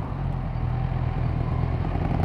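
Kawasaki Z1000 inline-four engine running at steady, low revs while the bike rolls slowly, heard from on the bike.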